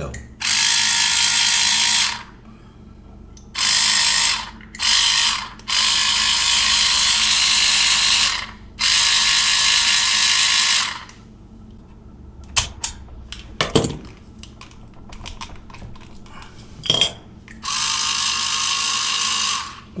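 The small RS-280SA DC motor of an electric salt and pepper grinder spinning its plastic reduction gears in short runs: a loud, high whirring buzz of meshing gears, switched on and off six times for one to three seconds each. A few sharp clicks of handling fall in the longer pause around the middle.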